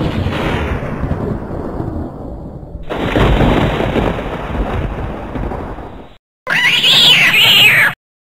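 A long, low rumbling noise that swells again about three seconds in and dies away after about six seconds. After a brief silence, a cat gives a loud, wavering yowl lasting about a second and a half near the end.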